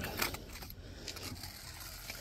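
Faint gritty scraping of a steel pointing trowel pressing sandy jointing compound down into patio joints, a few short scrapes at the start and then a low hiss.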